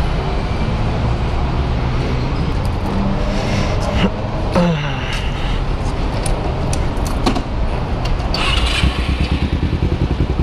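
Kawasaki Ninja 250 motorcycle engine idling steadily, with a few short knocks of handling near the bike in the middle, and a quick, even pulsing in the engine sound near the end.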